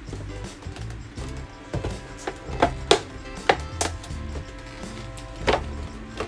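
A cardboard Barbie doll box being torn open by hand along its perforated edge, giving several sharp rips and snaps spaced across a few seconds. Background music plays underneath.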